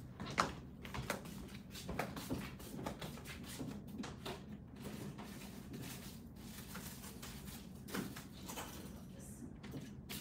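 Rummaging through things: scattered small clicks, knocks and rustles of objects being moved and handled, with a few louder knocks about half a second in and near 8 s.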